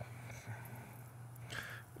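Quiet room tone with a steady low hum, and a short intake of breath near the end.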